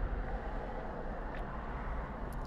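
Steady low background rumble and hum with no distinct event, and a single faint click about one and a half seconds in.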